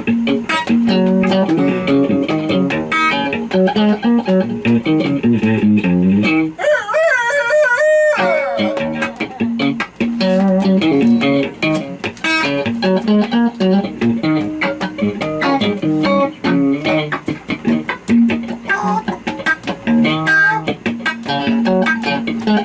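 Guitar playing a repeating riff between sung lines, with a brief high, wavering run of bending notes about seven seconds in.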